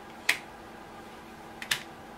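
Spanish playing cards being laid down onto a cloth-covered table, each landing with a sharp snap: one shortly after the start and a quick double snap near the end.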